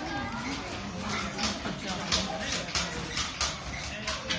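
Indistinct chatter of children and other visitors in a hall, with frequent short clicks and knocks.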